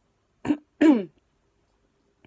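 A woman clearing her throat, two quick sounds, the second longer and falling in pitch, from a frog in her throat.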